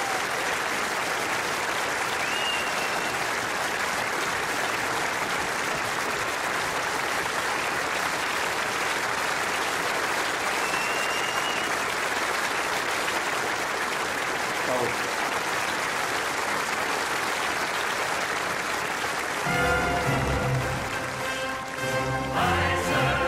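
A large concert audience applauding steadily, with a couple of brief high whistles. Near the end a full orchestra strikes up the next number over the clapping.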